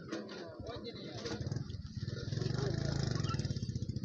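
Indistinct voices of people talking, with a low steady rumble that grows louder in the second half.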